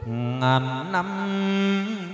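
A male chầu văn singer holding one long sung note. It starts low, slides up about a second in, and is then held with a slight waver.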